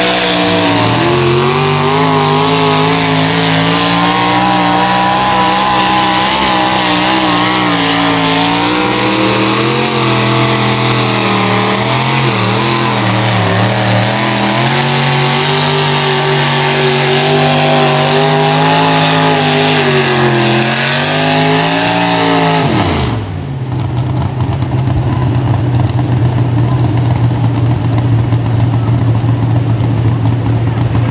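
Pulling tractor's engine running hard as it drags a weight-transfer sled, its pitch wavering up and down under the load. About 23 seconds in, the revs fall away sharply and it settles into a lower, steady rumble.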